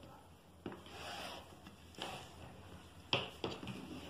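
A wooden tailor's square handled on fabric over a tabletop: faint scraping and rustling as it is shifted, then a sharp tap about three seconds in, followed by a few small ticks.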